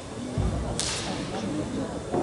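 A dull thump about half a second in, then a sharp slap-like crack a moment later, over a murmur of background voices.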